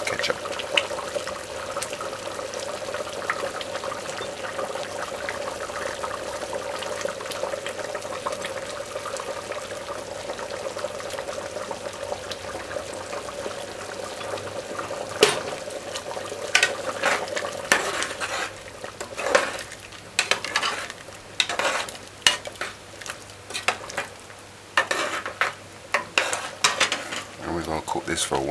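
A pot of stew bubbling steadily on the stove. From about halfway on, a metal spoon clinks and scrapes against the sides of the aluminium pot in a run of sharp knocks as the stew is stirred.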